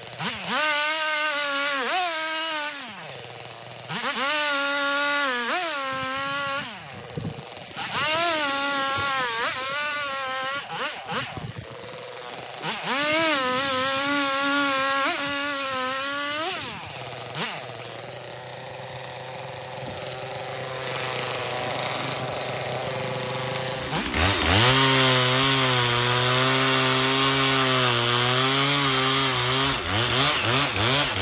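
Two-stroke chainsaw cutting firewood logs, its engine pitch rising and dipping again and again as it works through the wood. About two-thirds of the way through it drops to a quieter, steadier run for several seconds, then picks up loud again near the end. The chain is one the sawyer calls dull as a butter knife, too blunt to get much cut.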